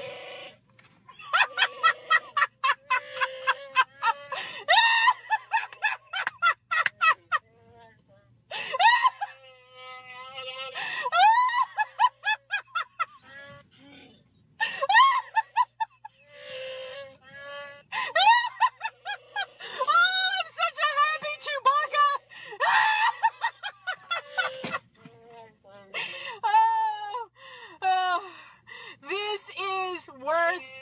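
A woman's uncontrollable, high-pitched laughter in long runs of rapid pulses with squeals and wheezing gasps between them. It is mixed with the electronic Chewbacca growl that her talking Wookiee mask plays when her mouth moves.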